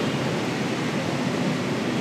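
Steady, even background hiss of room noise with no distinct events.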